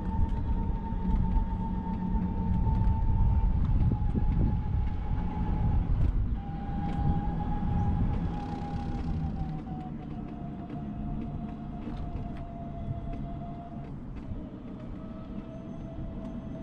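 A scooter's motor whining steadily as it rides along a concrete trail, the whine sinking slowly in pitch as it slows, over a low rumble that fades after about ten seconds.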